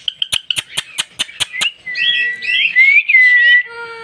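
A quick run of about ten sharp clicks over the first second and a half. Then an Alexandrine parakeet gives a whistled, chattering call for about two seconds.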